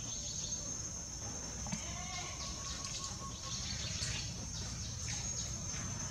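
Outdoor insect drone: a steady high-pitched buzz with short chirps repeating a few times a second, over a low rumble.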